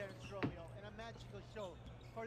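Faint basketball game broadcast audio: a ball bouncing on a hardwood court, with one clear bounce about half a second in, and a commentator's voice low in the background.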